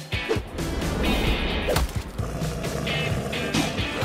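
Background music with a beat, with a sharp hit near the middle and another shortly before the end.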